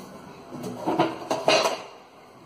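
Hinged sheet-metal cover of an electrical transfer switch box being swung open, with a few metallic clanks and rattles from about half a second in to near the end.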